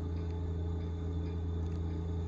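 A steady, unchanging low mechanical hum.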